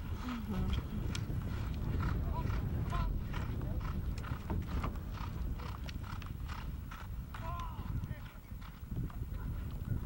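Hoofbeats of several polo ponies galloping on turf, a quick irregular run of dull beats, with brief shouts from the riders now and then.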